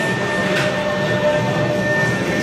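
Music with steady held notes playing over crowd noise in a crowded hall.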